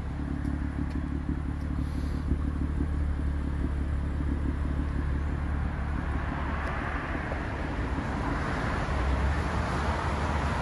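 BMW M2's turbocharged inline-six idling steadily, an even low engine note with no revving.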